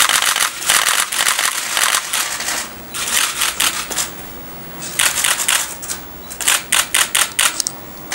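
Many camera shutters clicking in rapid bursts, with a lull in the middle and a second run of bursts from about five seconds in.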